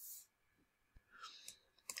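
Near silence, with a few faint short clicks from about a second in until just before the end.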